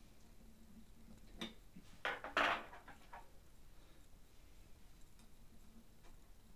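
Hard parts of a small CNC router frame being handled during hand assembly: a light click about a second and a half in, then a short clatter of knocks just after two seconds, the loudest moment, and a few faint ticks after.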